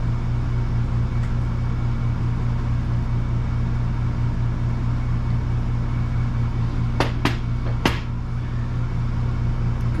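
Steady low mechanical hum, with three sharp metallic clicks about seven to eight seconds in as steel suspension parts are handled on the bench.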